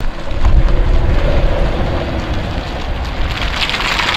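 Loud wind buffeting an outdoor microphone, cutting in suddenly, with the 2016 Corvette Stingray's V8 and tyres running low underneath as the car is driven slowly.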